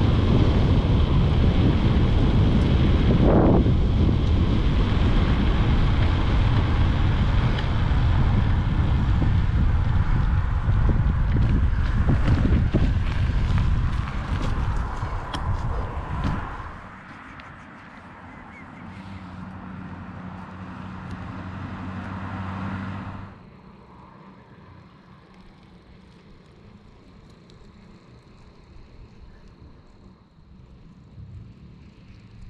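Loud wind noise on a GoPro Hero8 Black's microphone as a bicycle rides along a road, for a little over half the time. It then drops abruptly to a quieter, steady low vehicle hum that slowly grows louder and cuts off suddenly about three-quarters of the way through, leaving faint hiss.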